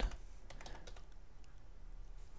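Computer keyboard typing: a quick run of soft, irregular key clicks as a web address is typed in.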